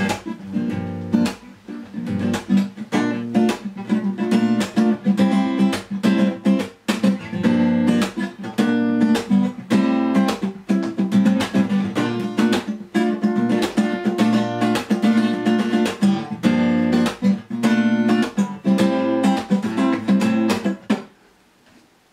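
Lâg Tramontane T66DCE steel-string acoustic guitar played in chords, a steady run of sharply struck strokes that stops about a second before the end.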